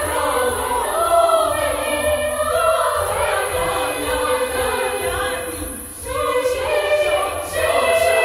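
Children's choir of girls singing a cappella, several voices holding sustained notes together. The sound dips briefly about six seconds in, then the voices come back in strongly.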